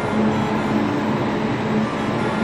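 Steady hum of a high-speed train standing at a station platform with its equipment running, with a low steady tone underneath.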